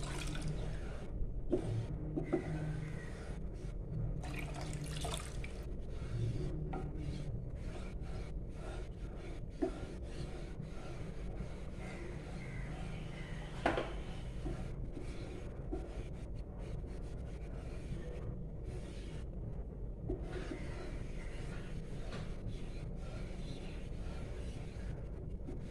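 Wooden spatula stirring thick, simmering coconut cream in a metal pan: wet swishing with scattered sharp knocks of the spatula against the pan, the loudest about two-thirds of the way through, over a steady low hum.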